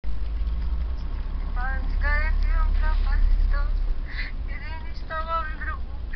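A steady low rumble throughout, with a high-pitched voice talking over it from about a second and a half in.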